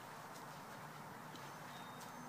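Faint, steady outdoor background noise in a yard, with a few faint, short, high chirps.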